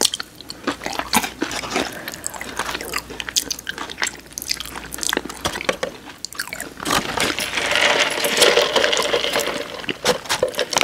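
Close-miked eating sounds: wet chewing, mouth smacks and crunches from people eating boneless chicken wings and fries, as a run of sharp clicks. A denser, louder stretch of sound comes near the end.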